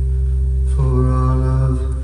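Recorded Hawaiian song: a man's voice singing long held notes over a steady low sustained accompaniment. A new sung phrase begins a little under a second in.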